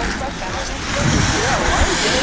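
Hockey players' voices calling out over the steady hiss of skate blades on ice.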